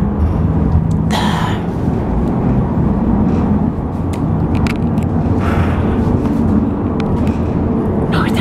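Steady low rumble and hum of a cable car cabin in motion, heard from inside the cabin, with a couple of brief soft rustles.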